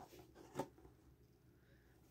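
Near silence: room tone, with one faint tap about half a second in as the cardboard toy box is handled.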